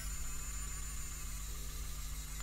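A 3D printing pen's filament-feed motor running with a steady whirring buzz and a faint high whine while it extrudes filament, over a low electrical hum.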